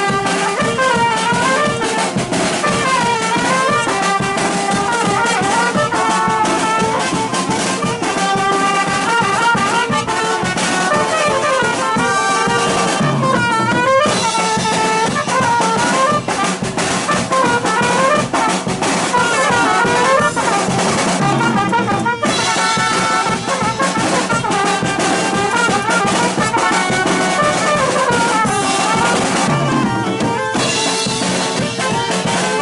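Live village brass band playing a dance tune: trumpets and trombones carry a melody in rising and falling phrases over drums keeping a steady beat.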